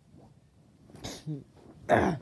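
A child's voice making two short growl-like sound effects, the first about a second in, falling in pitch, and a louder one near the end.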